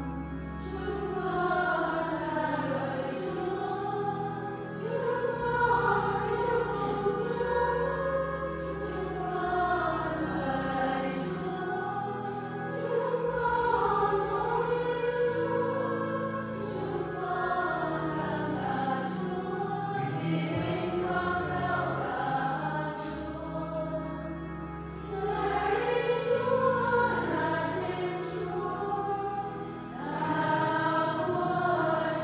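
A congregation of mostly women's voices singing a hymn together, with a keyboard accompaniment holding low sustained notes, the singing pausing briefly between phrases.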